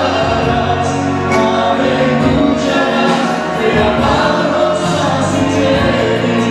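A church congregation singing a praise song together over music, loud and steady.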